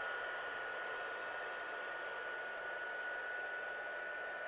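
Handheld heat gun running steadily: a hiss of blown air with a constant high whine from its fan motor.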